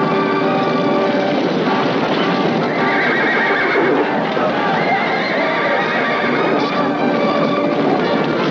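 A film-soundtrack cavalry charge: many horses galloping, with neighing, over background music with held notes.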